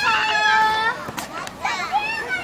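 Young children's high-pitched voices calling and chattering, with one long held call in the first second and more voices near the end.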